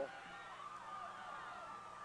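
Football spectators yelling while a long pass is in the air, many voices overlapping, with one long held shout standing out above the rest.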